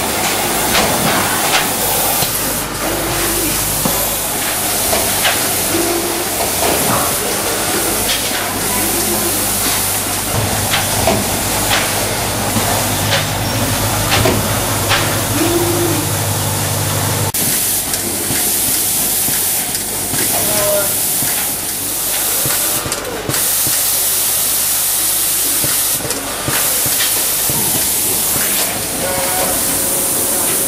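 Automated cactus-cutting planting machine running: a steady hiss with scattered clicks and knocks, and a low hum for several seconds in the middle. The sound changes abruptly a little past halfway.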